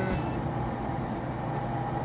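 Cabin noise of a 1976 Mini Clubman 998 automatic on the move: the 998 cc four-cylinder A-Series engine running steadily with its whine, over road and wind noise. A loud, unrefined cabin.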